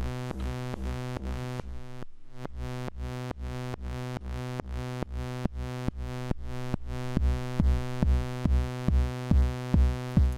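Eurorack synthesizer patch through a Cosmotronic Messor compressor: a held synth tone, rich in overtones, pumped down in level about three times a second by side-chain compression. A low thump falls on each beat and grows louder over the last few seconds.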